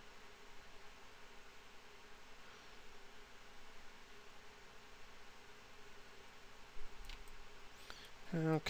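Faint room tone: a steady hiss and a low hum. Near the end come two sharp computer mouse clicks.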